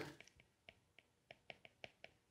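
Faint, irregular ticks of a pen tip tapping and scratching on a writing tablet, about seven light clicks in near silence.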